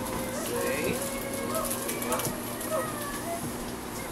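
A small child's quiet, indistinct voice, with wavering high-pitched vocal sounds through most of the stretch, over a steady low hum.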